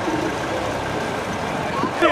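Steady outdoor city background noise: a low rumble with faint, indistinct voices.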